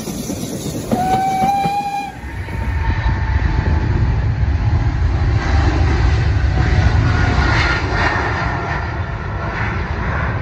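A passing train rattling along, with a short horn blast about a second in. Then, after a cut, a twin-engine jet airliner (Boeing 777) on its takeoff climb: jet engines at full power, a deep steady rumble with a faint whine over it.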